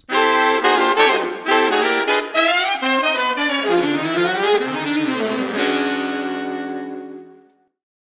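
Saxophone music: a quick melodic phrase that ends about five and a half seconds in on a held closing note, which fades away.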